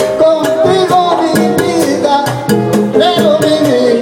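Live salsa band playing: congas, timbales and drum kit keep a driving rhythm under a melody line that moves up and down.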